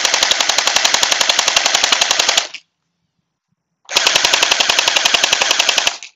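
Anstoy M4 electric gel blaster firing full-auto, its gearbox cycling in rapid, even shots as it launches gel beads. There are two long bursts: the first stops a little over two seconds in, and the second starts about four seconds in and runs nearly to the end.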